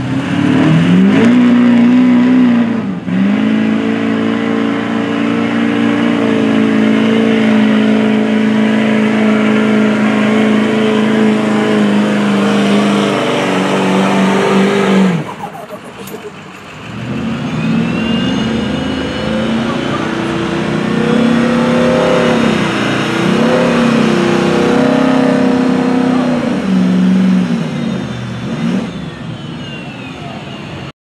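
Diesel pickup truck engine held at high revs under heavy load while pulling a weight sled, running about fifteen seconds, dropping away briefly, then pulling again with the pitch wavering up and down.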